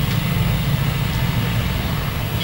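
Steady low rumble of outdoor background noise with a hum underneath, in a pause in speech.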